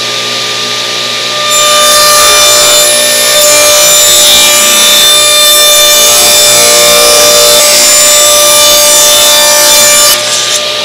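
Ridgid table saw running, ripping a 3/8-inch clear pine board lengthwise. The sound grows louder about a second and a half in as the blade enters the wood, holds steady through the long cut, and eases back near the end as the board clears the blade.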